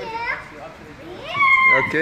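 High-pitched voices with no clear words: a short call right at the start, then a louder, longer held call about one and a half seconds in.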